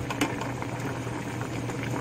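Pot of pork kimchi jjigae bubbling at a boil, a steady run of small pops and crackles over a low steady hum.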